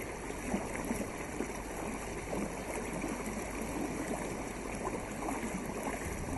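Lake water lapping and gurgling against a canoe's hull: a steady wash of water with many small splashes and gurgles.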